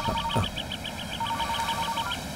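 Mobile phone ringing: an electronic ringtone of rapid high beeps over a lower beeping tone, which drops out briefly about half a second in.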